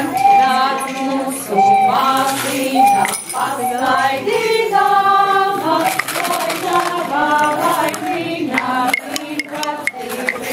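A group of women singing a Latvian folk song together, unaccompanied, with sustained sung lines that carry on without a break.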